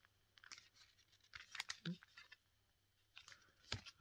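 Faint scattered clicks and taps from a small metal trading-card tin being handled and opened, with a sharper click near the end.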